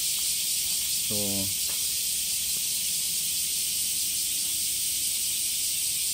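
A steady, high-pitched hiss that neither rises nor falls, with one short spoken word about a second in.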